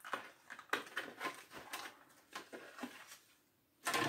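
Faint, scattered clicks and light knocks of a wooden workpiece and small tools being handled on a workbench. No power tool is running.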